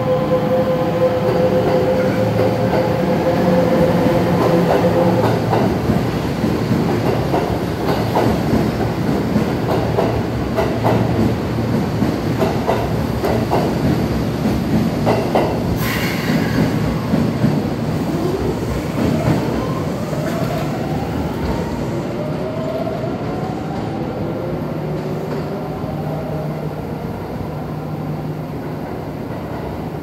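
Kintetsu limited express train (sets AL12 and AT57) pulling out of an underground station. Wheels click over rail joints as the cars pass, then the motor whine rises in pitch as the train speeds up into the tunnel, fading slowly toward the end.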